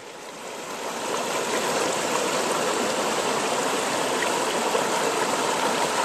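Creek water running steadily, fading in over the first second and then holding level.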